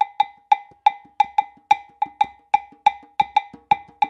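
A high-pitched hand percussion instrument struck in a repeating syncopated pattern, about three to four sharp clacks a second, all on one pitch: the percussion opening of a song for Exu.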